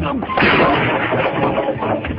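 A loud crash about half a second in, the noise dying away over about half a second, amid shouting voices.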